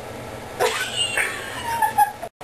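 A high, wavering, voice-like sound that glides up and down in pitch, starting about half a second in, with a short loud knock at the very end.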